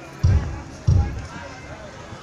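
Two deep, low thumps about two-thirds of a second apart, the loudest sounds here, over a faint background of crowd noise.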